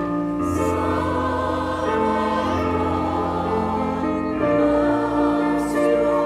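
A church choir singing a slow communion hymn, voices held over sustained chords.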